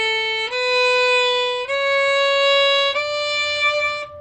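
Violin playing a run of bowed quarter notes rising step by step, each held about a second and joined to the next with no gap: the notes played at full length, not staccato.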